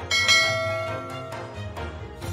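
A single bell-like chime sound effect rings out just after the start and fades away over about a second and a half, over soft background music.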